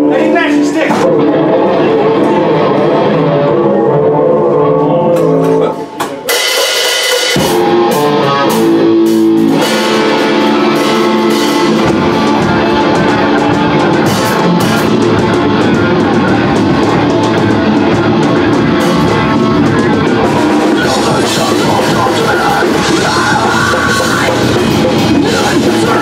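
Live heavy metal band playing a song on distorted electric guitars, bass guitar and drum kit, loud and dense. About six seconds in the low end drops out for a moment, then the full band comes back in.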